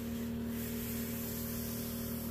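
Steady background hum made of several fixed tones, with a light hiss over it.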